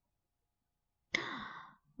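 Near silence, then about a second in a woman's breathy, falling sigh of delight, under a second long.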